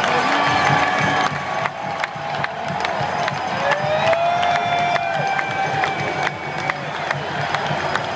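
Large football-stadium crowd cheering, with long drawn-out whoops and yells held above the crowd noise and sharp claps scattered through it.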